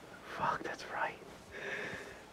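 Quiet, breathy laughter from two men: a few short wheezing breaths and stifled gasps rather than voiced laughs.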